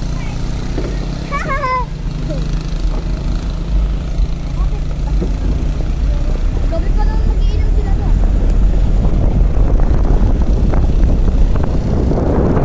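Car in motion heard from inside the cabin: a steady low engine and road rumble that grows louder and rougher in the second half. A brief voice is heard near the start.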